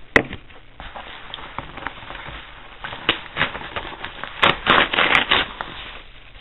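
A yellow padded kraft-paper mailer being torn open by hand: paper ripping and crinkling, with a sharp snap just after the start, a loud rip about three seconds in and a quick run of loud tearing crackles near the end.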